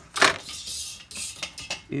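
A steel framing square set down on a wooden board with a sharp metallic clack, followed by about a second of scraping and a few lighter clicks as it is shifted into place.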